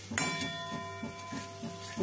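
A steel cooking pan holding jaggery pieces is knocked once by a spatula and rings on with a steady metallic tone that slowly fades.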